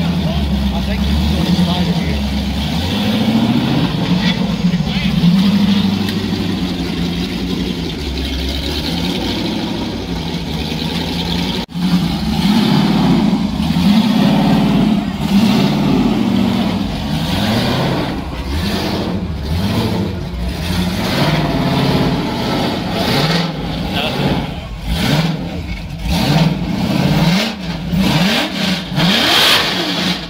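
650 hp LS1 V8 in a tube-chassis rock buggy, revved in repeated throttle blips as it crawls up a rock ledge, its pitch rising and falling over and over.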